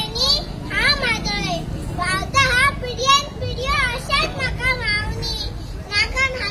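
A young girl's high voice declaiming loudly into a microphone in short phrases, with wide sweeps of pitch, over a low steady rumble.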